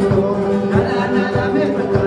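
Live Andean-style worship song: a man sings into a microphone over strummed acoustic guitars and a mandolin-like double-strung instrument, with a steady beat on a large wooden drum.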